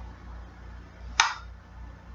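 A single sharp click about a second in, over a low steady hum.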